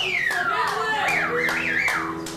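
Surf rock band playing live: drums keep a steady beat under held low notes while a high note slides down and then wobbles up and down.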